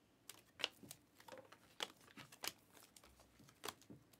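Panini Optic chrome basketball cards being slid one at a time off a stack held in the hand: a dozen or so soft, irregular flicks and scrapes of card stock against card stock.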